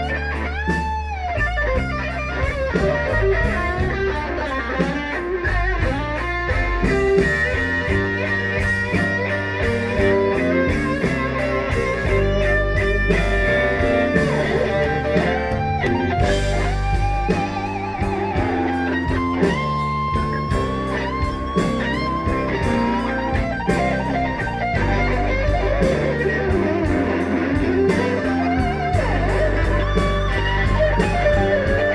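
Live band playing a slow blues, with a lead electric guitar solo on a Stratocaster-style guitar: string bends and wide vibrato over bass and drums.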